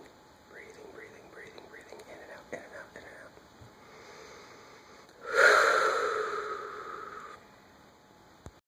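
Effortful breathing of a man with cystic fibrosis: a run of short, quick breaths, then one long, loud breath about five seconds in that fades away over about two seconds.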